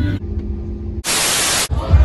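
A burst of white-noise static, like a detuned TV, lasting a little over half a second and starting and stopping abruptly. It is an edited transition sound. It is preceded by a low rumble and followed by voices.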